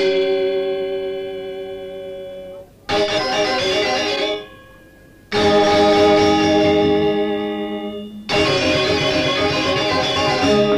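Balinese gong kebyar gamelan of bronze metallophones and gongs. The ensemble strikes four sudden, loud unison accents about every two to three seconds, and each chord is left to ring and fade before the next.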